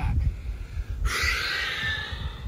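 A man's long, breathy exhale starting about a second in and lasting about a second, as he folds forward into a seated straddle stretch.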